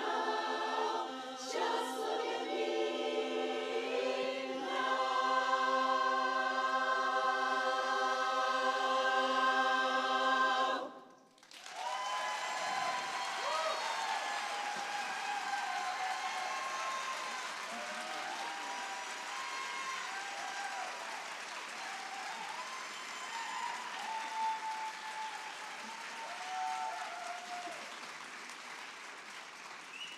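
Women's barbershop chorus singing a cappella in close harmony, swelling into a long held final chord that cuts off about eleven seconds in. The audience then bursts into applause with whoops and cheers, which slowly die away.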